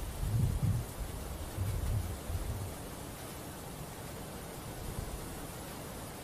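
Wind buffeting the microphone: two low rumbles in the first three seconds, then a steady faint outdoor hiss.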